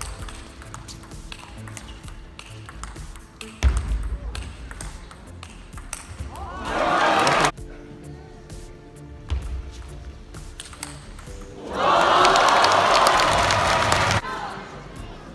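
Table tennis ball clicking off bats and table during rallies, over steady background music. Two loud bursts of shouting come about six and a half seconds in and again near the end, as points are won.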